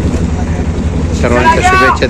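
Low, steady engine rumble of a motorboat, heard from on board. A voice speaks over it in the second half.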